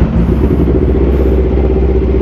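Sport motorcycle engines idling steadily with a constant low hum, no revving.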